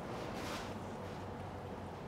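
Quiet room tone with a steady low hum and a faint, brief soft noise about half a second in.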